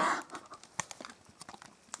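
A few faint, scattered clicks and taps of a cardboard box and its lid being handled.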